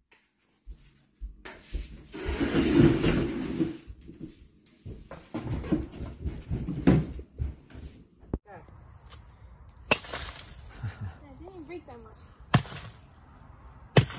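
Indistinct people's voices, then sharp cracks near the end as a baseball bat smashes gingerbread houses, the last strike among the loudest sounds.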